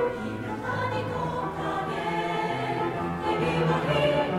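A choir singing, with held notes that move from pitch to pitch every half second or so.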